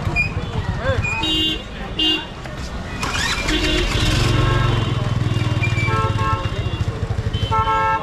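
Busy street traffic: a motorcycle engine rumbles close by from about halfway, over short honks of vehicle horns about a second in, about two seconds in and again near the end, with crowd chatter underneath.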